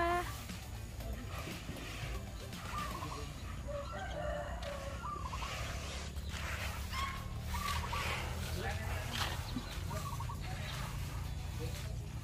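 Chickens calling faintly, short scattered clucks and crowing every second or two, over a low steady hum.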